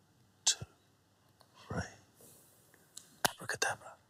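A man's hushed whispering voice, broken by sharp clicks: one about half a second in and a quick run of three or four near the end, which are the loudest sounds.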